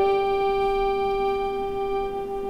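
Bayan (Russian chromatic button accordion) moving to a new note right at the start, then holding one long sustained note that slowly fades.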